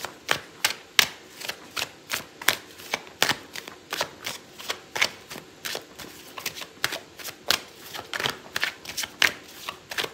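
A deck of oracle cards being shuffled by hand: a continuous, irregular run of quick card slaps and flicks, about three a second.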